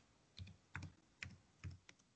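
Faint computer keyboard typing: about five separate keystrokes spread over two seconds.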